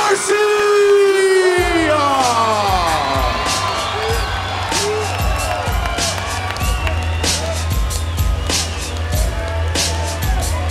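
Ring announcer's long, drawn-out call of the fighter's surname, held and sliding down in pitch. About a second and a half in, walkout music with a heavy bass starts, over a cheering arena crowd.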